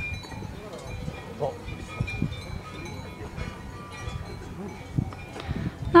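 Several cowbells on grazing cows clanking and ringing irregularly, overlapping at different pitches.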